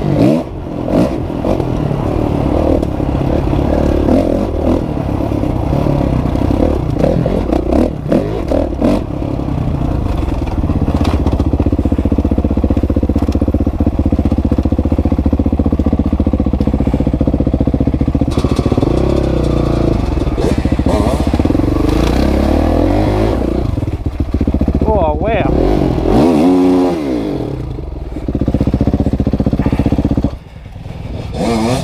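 A 2016 Kawasaki KX450F's single-cylinder four-stroke engine running under load on a rough trail, with knocks and clatter from the bike over bumpy ground in the first several seconds. Near the end the revs swing up and down, and the sound drops off sharply at the very end.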